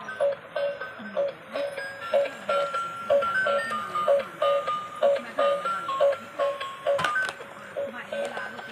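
Electronic tune from a battery-powered transparent light-up toy car: a simple beeping melody over a repeating low note about twice a second. A sharp knock comes about seven seconds in.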